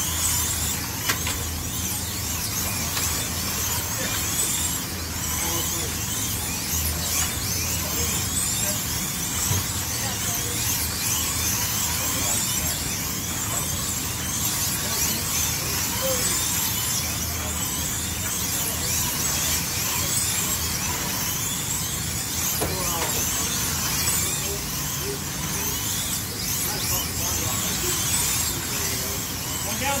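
Slot cars racing around a multi-lane track: the small electric motors whine continuously, a constant overlapping run of high whines rising and falling as the cars speed up, brake and pass.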